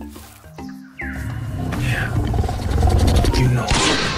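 Velociraptor growling sound effect over background music: a low rumbling growl with two falling shrieks, ending in a short harsh burst.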